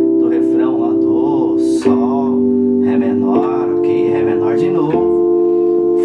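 Yamaha Motif XF6 synthesizer keyboard playing held chords, moving to a new chord about every one and a half seconds. Voice-like sounds and guitar run underneath.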